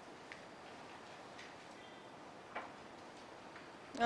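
Quiet classroom room tone with four faint clicks about a second apart; the one a little past halfway is the clearest.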